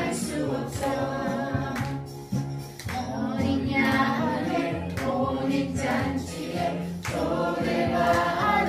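Christian worship song: voices singing together over instrumental accompaniment, with a brief dip about two seconds in.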